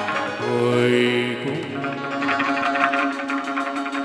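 Vietnamese chầu văn ritual music in an instrumental passage between the singer's verses. A held note comes first, then a quick, steady beat of percussion clicks under plucked notes.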